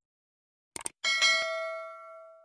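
Subscribe-button animation sound effect: a quick double mouse click, then a bright notification-bell ding about a second in that rings on and fades away.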